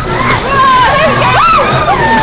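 Riders on a spinning Waltzer fairground ride screaming and whooping, several high voices sliding up and down in pitch.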